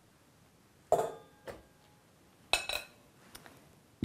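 A metal utensil clinking against glass and stainless steel mixing bowls as softened butter is scraped into a stand mixer bowl: two ringing clinks about a second and a half apart, with lighter taps between and after.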